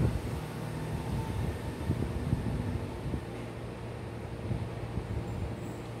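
Steady low room hum from a running machine such as a fan, over faint background noise; no distinct sound event stands out.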